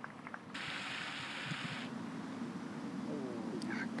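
Quiet outdoor ambience on a golf green, with a few faint clicks. About half a second in, a steady hiss starts and stops abruptly, lasting just over a second.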